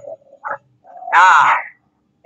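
A man's voice making one short, drawn-out vocal sound with a wavering pitch, about a second in.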